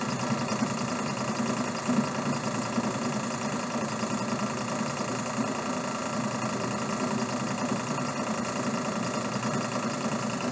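Cumulative compound DC motor and its coupled dynamometer running under a light load of a few newton-metres, near 1,650 RPM. A steady machine hum made of many fixed tones.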